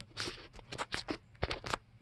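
A quick run of about ten light clicks and scratches, beginning a moment in and stopping just before the end.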